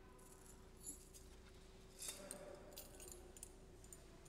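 Faint metallic clinking and jingling of a thurible's chains against the censer as it is handled: a light clink about a second in, then a short cluster of clinks from about two to three and a half seconds in, over a faint steady hum.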